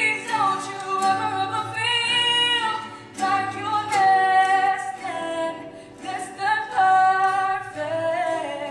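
A woman singing live with her own acoustic guitar, in long held notes that slide between pitches, each phrase lasting a second or more.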